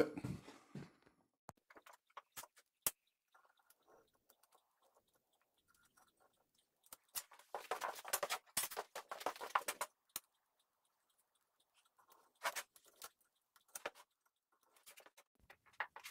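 Gouge cutting chips out of a beech block: short crunching, scraping cuts with long quiet gaps. A few single clicks come early, the longest run of cuts comes about halfway through, and shorter bursts come near the end.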